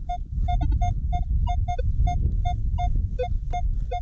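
Minelab X-Terra Pro metal detector beeping as its coil sweeps over a buried target: short pitched beeps, about three to four a second, mostly on one mid tone with a few lower and higher ones, over a steady low rumble. The beeps are the detector's target tones for an interesting signal reading in the high 70s to 80 on its scale.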